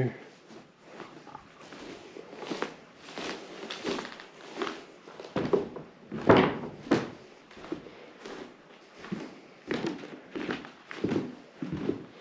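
Footsteps on old wooden barn-loft floorboards: irregular knocks and thuds as people walk across the boards.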